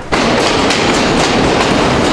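Passenger train carriage running, a loud steady rumble and rattle heard from inside the carriage by its open door. It starts abruptly just after the beginning.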